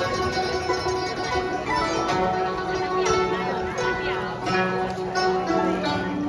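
An ensemble of guzheng (Chinese plucked zithers) playing a tune together: a stream of plucked, ringing notes with occasional sliding pitch bends.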